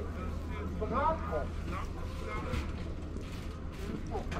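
Untranscribed voices talking nearby over a steady low hum.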